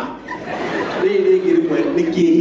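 A man chuckling and calling out through a microphone and PA system, with a drawn-out, held voice from about a second in.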